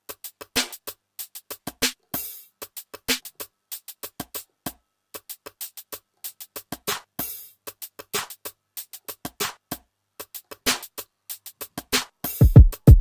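Raw, unprocessed drum samples playing back a programmed Logic Pro X Drummer groove: a fast run of short, clicky percussion hits, with a clap about two seconds in and again about seven seconds in.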